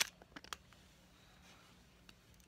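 A sharp click, then a few faint clicks within the first half second: a plastic toy spoon knocking against a Baby Alive doll's plastic mouth. After that it is near silent.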